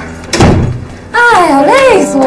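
A door being shut, a single thud about half a second in.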